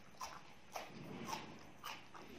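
Crunching as a raw green vegetable stick is bitten and chewed, four sharp crunches about half a second apart.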